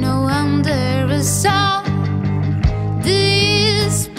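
Studio-recorded rock song: a female voice sings a melodic line, holding a wavering note near the end, over sustained bass and electric guitar with drum hits.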